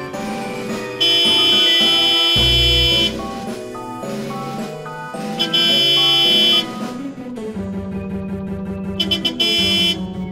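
Background music with two loud, held, blaring horn-like blasts: the first lasts about two seconds, starting a second in, and a shorter one comes at about five and a half seconds. The blasts are a truck horn sound effect.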